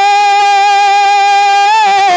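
A man singing a naat into a microphone, holding one long high note steady, then breaking into a short wavering vocal turn near the end.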